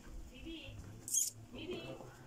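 Low voices talking, with faint squeaky high sounds and a short hiss about a second in that is the loudest sound.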